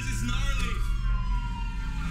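Ambulance siren wailing, its pitch falling slowly, over a steady low engine rumble.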